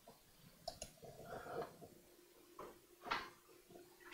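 A few faint clicks and small handling noises from a laptop mouse being operated, over quiet room tone.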